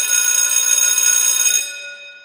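A bright bell ringing continuously and loudly for about one and a half seconds, then fading away near the end.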